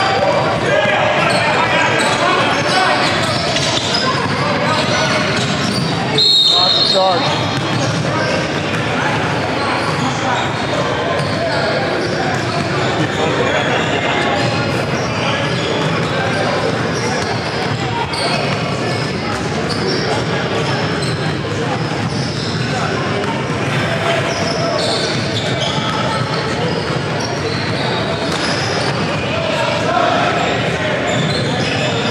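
Busy gym during a basketball game: a ball dribbling on the hardwood court and steady crowd chatter in the echoing hall. A referee's whistle blows once, briefly, about six seconds in.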